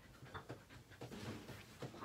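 A dog panting close to the microphone: faint, quick breaths a few times a second.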